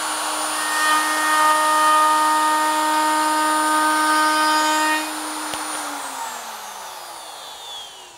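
Handheld plunge router with a round-over bit running at full speed as it routes across the end grain of a board, a steady high whine for about five seconds. It is then switched off and the whine falls in pitch as the motor spins down.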